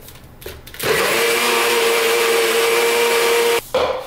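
NutriBullet personal blender running, blending a frothy milky drink: a loud steady motor whine starts about a second in and cuts off near the end, followed by a short second burst.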